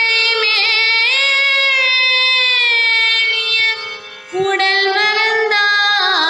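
A woman singing a Carnatic-style melody solo, her notes sliding and wavering in ornaments. She breaks off for a breath about four seconds in, then resumes.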